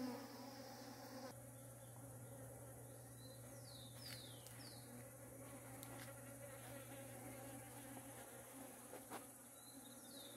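Faint, steady buzzing of honeybees working pitaya flowers. A few short, high, falling chirps come in about four seconds in.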